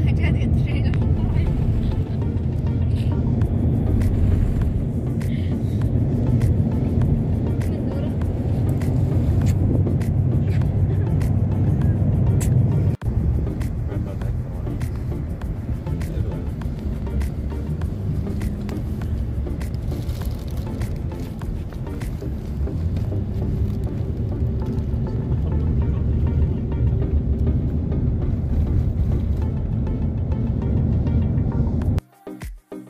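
Steady low rumble of road and engine noise inside a moving car's cabin, with music and voices in the background. The sound drops out briefly about halfway through.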